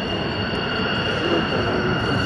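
F-16 fighter jet on landing approach, its engine giving a steady rushing noise with a high whine held at a constant pitch.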